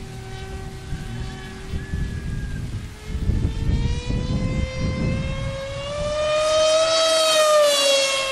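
Electric FunJet RC plane's motor and propeller whining at full speed overhead, a steady pitched whine that climbs in pitch and grows louder toward a peak about seven seconds in, then drops as the plane passes.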